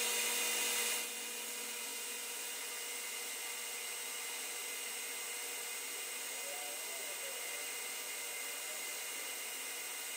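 Lathe running steadily with a high whine while a hand-ground form tool cuts the radius on a tiny metal ball; the sound drops a little about a second in.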